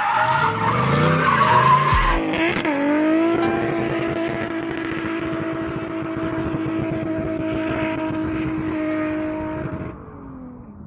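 Drift car engine revving up and down over skidding, squealing tyres. From about three seconds in comes a long, steady held note, and it cuts off just before the end.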